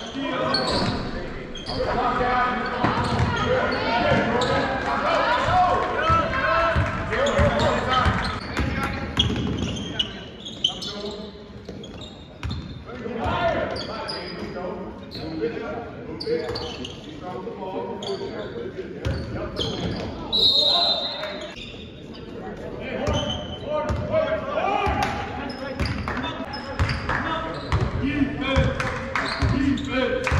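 A basketball bouncing on a hardwood gym floor as it is dribbled, amid shouting and chatter from players and spectators, all echoing in a large gymnasium. A brief high-pitched tone sounds about twenty seconds in.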